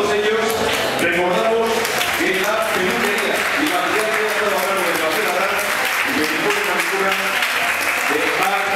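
Audience applauding, the clapping swelling in about a second and a half in and holding, with a voice heard along with it.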